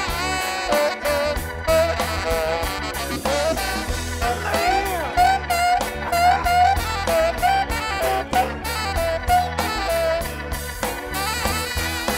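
Live blues-soul band playing an instrumental stretch: drums and bass keep a steady beat under a bending saxophone melody line.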